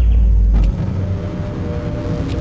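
Deep, steady bass rumble from the film's suspense score, breaking off about two-thirds of a second in, with a few held higher tones above it.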